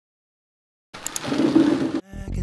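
Silence for about the first second, then a kitchen faucet running water over green beans in a sink, with a faint tick or two, cut off abruptly at the end.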